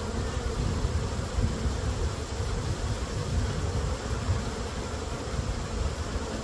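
Many honey bees buzzing steadily around an open hive and a frame of brood comb crowded with bees, with an unsteady low rumble underneath.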